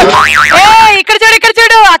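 A cartoon-style "boing" sound effect, a quick wobbling up-and-down pitch lasting about half a second, followed by a drawn-out voice.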